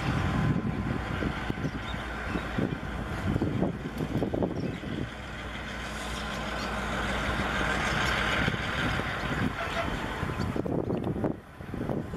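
A freight train of empty flat wagons rolling past along the track, with a steady wheel-on-rail rumble and hiss that swells toward the later part and eases off near the end. Gusts of wind buffet the microphone throughout.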